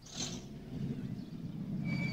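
A vehicle engine running at idle, its low hum growing louder about half a second in, with a brief hiss at the start. A single steady high tone comes in near the end.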